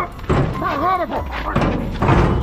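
A man's voice crying out in wordless, strained shouts that swoop up and down in pitch, followed by a few short thumps near the end.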